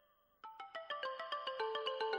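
Instrumental music: after a brief near-silence, a quick run of bright struck notes, about six a second, steps down in pitch and grows louder from about half a second in.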